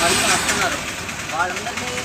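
Road traffic going by, with a loud rush of a passing vehicle that fades about half a second in, under a man talking.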